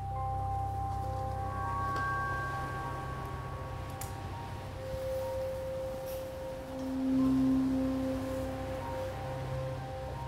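Ambient film score: a low drone under long-held, bell-like tones that fade in and out, with a lower tone swelling for a couple of seconds about seven seconds in.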